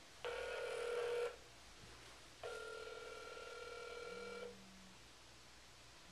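Telephone ringback tone heard through a cell phone held to the ear: two rings of a steady buzzing tone, the first about a second long and the second about two seconds long, while the called phone goes unanswered.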